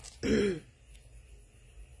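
A woman clearing her throat once: a short, loud rasp with a voiced sound falling in pitch, just after the start.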